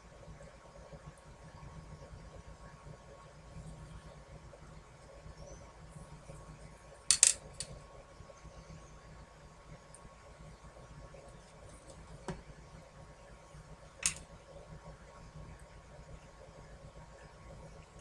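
Steady faint room hum with a few sharp taps of small tools or objects on a tabletop: a loud double tap about seven seconds in, a faint one near twelve seconds and another about fourteen seconds in.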